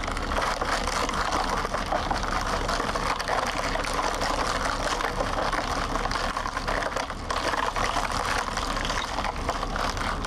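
Wheel made of cola-filled plastic bottles taped around a car rim, rolling slowly on pavement: a steady, dense crackle and crunch of plastic bottles and tape against the ground, over a low rumble.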